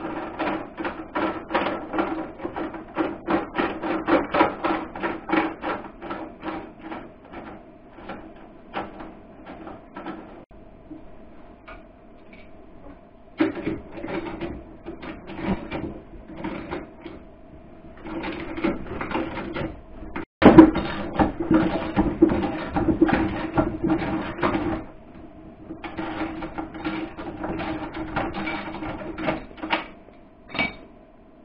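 A ratchet wrench clicking in quick runs as it turns the bolt of a knockout punch (slug buster) through the sheet-metal wall of an electrical box. There is one loud, sharp snap about two-thirds of the way through.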